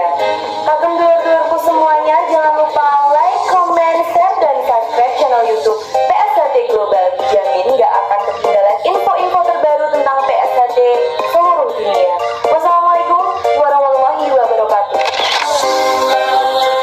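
Background music with a woman's high-pitched voice speaking over it.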